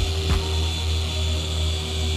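Rupes orbital polisher with a yellow foam polishing pad running on car paint, a steady motor hum, with a light knock or two near the start.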